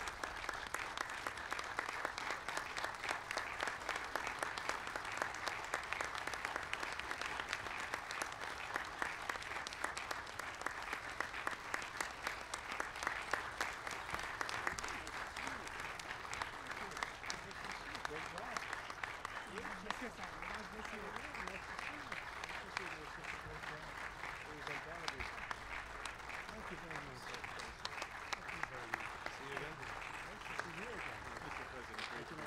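Audience applauding steadily, a little softer in the second half, with indistinct voices mixed in from about twenty seconds in.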